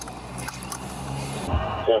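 Steady low hum of an idling car, with a couple of faint clicks about half a second in. A man starts speaking near the end.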